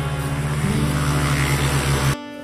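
Background music in an instrumental passage of a pop love song: sustained low notes and chords under a swelling, hiss-like wash that builds in loudness and stops sharply at the very end.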